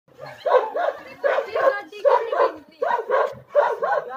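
Dogs barking loudly and repeatedly, in quick runs of two or three barks.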